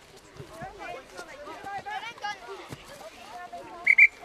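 Scattered shouts and calls of children and adults across a rugby field, then a short, loud referee's whistle blast right at the end as the referee rules on the ruck.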